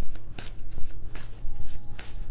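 A deck of tarot cards being shuffled by hand: an uneven run of short, papery strokes.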